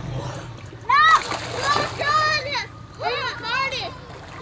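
Young girls squealing in high-pitched cries as they play and splash in lake water, with a splash of water about a second in and more squeals near the end.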